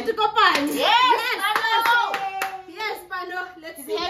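Excited voices whooping and exclaiming with pitch sliding up and down, over a few scattered hand claps.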